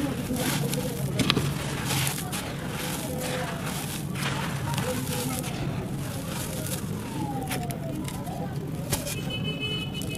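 Hands scooping and dropping dry, crumbly dirt, a grainy rustle and patter as the loose soil and small clods fall and are pressed together. A steady low hum runs underneath.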